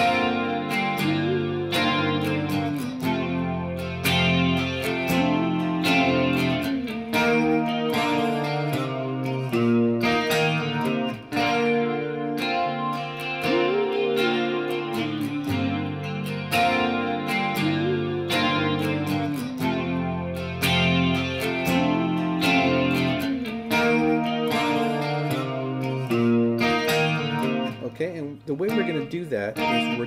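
Electric guitar with humbucker pickups playing sustained chords and a lick. The lick has bent notes that rise and fall and recurs throughout. Near the end the notes waver faster and the playing thins out.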